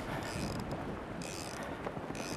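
Steady wind noise on the microphone over open water, with a low rumble and a few faint ticks.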